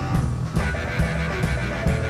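Live blues-rock band: an electric guitar playing lead over bass and drums, with cymbal and drum strikes about twice a second.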